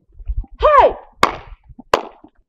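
A woman's short exclamation, rising then falling in pitch, followed by two sharp cracks about two-thirds of a second apart.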